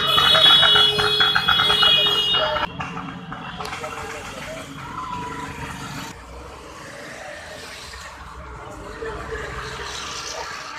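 A loud, high pulsing tone that cuts off abruptly a few seconds in, followed by quieter sound of scooters and motorcycles riding past, with voices.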